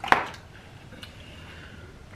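People eating fast-food fries: one sharp click just after the start, then faint quiet chewing and handling of food, with a small tick about a second in.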